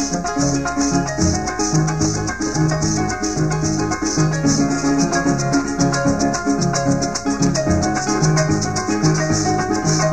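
Venezuelan llanero music without singing: a harp plays melody and bass over steady maraca shaking, with plucked strings alongside in a driving rhythm.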